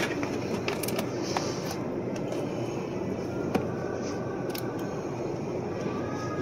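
A 3/8"-16 tap being turned by hand into a steel freezer door frame, cut dry without lubricant, giving a few sharp metallic clicks over a steady mechanical background hum.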